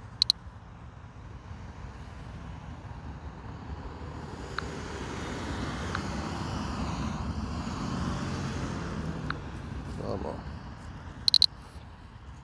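A road vehicle passing by, its sound swelling over a few seconds and fading away. Short, sharp clicks come just after the start and again near the end.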